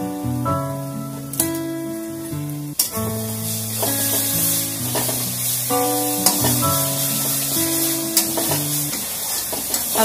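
Food frying in hot oil in a metal kadai: a steady sizzling hiss that starts abruptly about three seconds in. Background music of held, plucked-sounding notes plays throughout.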